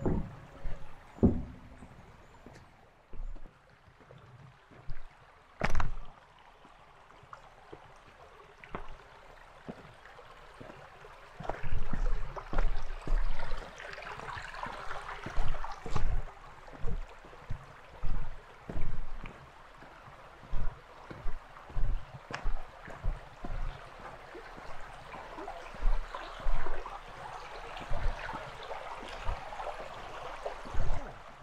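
A shallow brook running over stones, its rushing louder in the second half, with the low thuds of footsteps at a walking pace on a rocky path.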